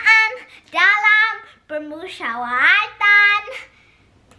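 A child singing in a high voice, in several short phrases with sliding pitch and a held note past the three-second mark.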